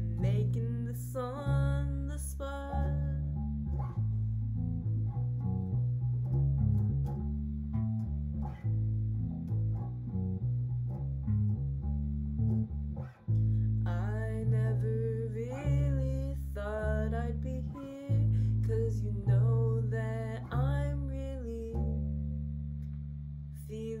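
Electric bass guitar plucking a slow line of low notes, with a voice humming a wordless melody over it for the first few seconds and again from about 14 s to 23 s; in between the bass plays alone.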